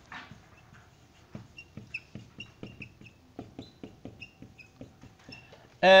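Dry-erase marker writing on a whiteboard: a run of short taps and small high squeaks as letters are stroked out.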